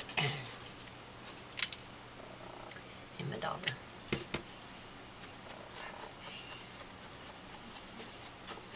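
Tabletop handling sounds of paper-craft work: craft tools and paper being picked up, moved and set down on a desk, with a few sharp clicks, one about a second and a half in and two close together about four seconds in.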